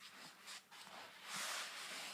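Faint rustling and scraping of a cardboard Pokémon theme-deck box and its cards being handled as the box is opened, a little louder in the second half.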